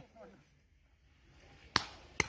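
A shouted word trails off, then after about a second of near quiet a paintball marker fires one sharp crack near the end.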